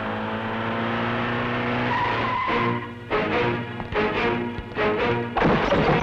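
A jeep's engine running as it drives in, under dramatic film music; from about three seconds in, the music turns to a run of sharp, repeated hits.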